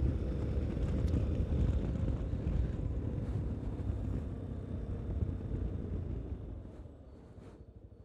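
Yamaha Ténéré 250's single-cylinder engine running under way, with wind noise on the microphone, fading as the motorcycle slows. Near the end the engine is quieter, with a quick, even pulsing beat.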